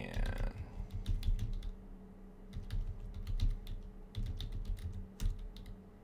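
Typing on a computer keyboard: quick runs of key clicks in three bursts, as a terminal command is typed and entered.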